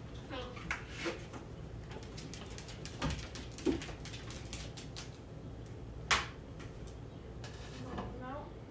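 A few short clicks and knocks from handling at a kitchen stove and frying pan, the sharpest about six seconds in, over a low steady hum.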